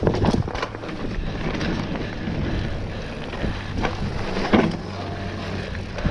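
Mountain bike riding fast down a dirt singletrack: steady wind rush on the microphone and tyre noise, with sharp knocks and rattles from the bike over bumps, the loudest about four and a half seconds in.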